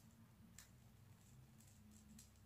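Near silence with a few faint ticks as a peel-off charcoal mask is slowly pulled away from the skin of the cheek.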